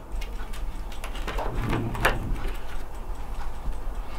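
Faint, irregular light clicks and handling noise from a photo album's pages, with one sharper click about two seconds in, over a steady low room hum.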